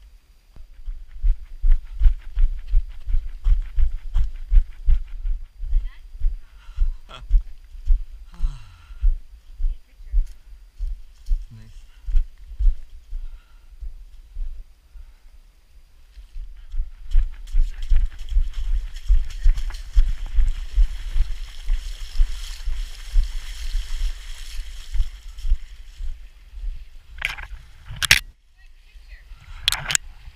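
Running footsteps thudding along a trail, about three strides a second, as the camera is carried at a run. For several seconds past the middle a splashing hiss joins the steps, typical of feet running through shallow water.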